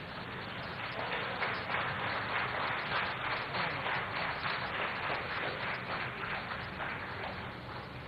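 Audience applauding: many hands clapping in a dense, steady patter that swells about a second in and eases near the end.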